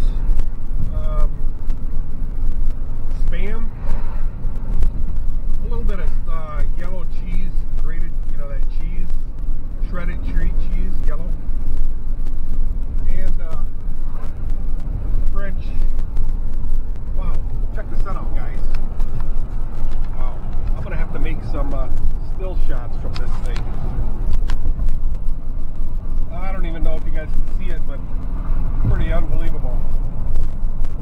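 Steady low road and engine rumble inside a moving car's cabin, with a man's voice talking at intervals over it.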